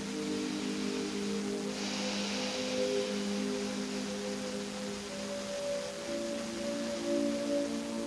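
Soft, slow background music of sustained ringing tones, like a singing bowl or ambient pad, holding a chord that shifts to new notes about five to six seconds in. A faint hiss rises under it from about two to five seconds in.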